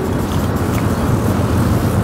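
Steady low rumble of road traffic from a nearby highway.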